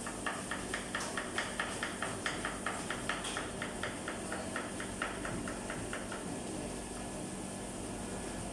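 A kitchen knife chopping vegetables on a plastic cutting board in quick, even strokes, about four or five a second, stopping about six seconds in, over a steady background hum.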